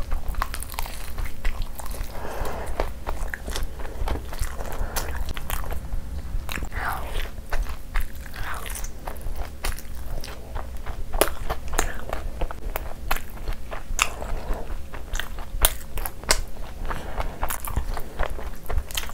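Close-miked wet chewing of a mouthful of soft luchi and butter chicken gravy, with frequent sharp lip-smacking clicks.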